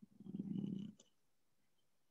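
A short, low, creaky hum, a man's closed-mouth "hmm" while he counts, lasting under a second, followed by a faint click about a second in.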